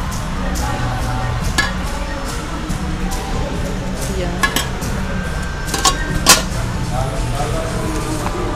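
A metal ladle clinking against stainless-steel sauce trays and lids: a few separate sharp clinks, the loudest about six seconds in, over a steady background of music and chatter.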